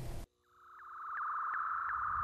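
Synthetic outro sting: a steady high electronic tone fades in about half a second in and holds, with faint regular ticks on it, about four or five a second.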